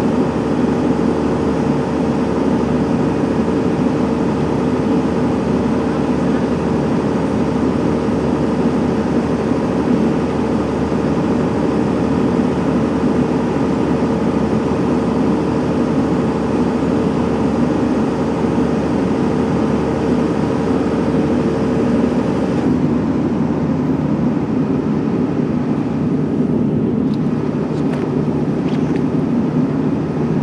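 A steady, loud mechanical drone with a constant hum in it; the hum and the hiss above it cut off abruptly about 23 seconds in, leaving the lower drone running.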